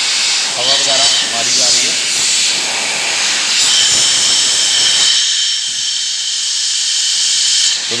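Compressed air hissing loudly and steadily from a blow-gun nozzle held against a diesel crankshaft, blowing out its oil galleries to clear dirt and leftover oil.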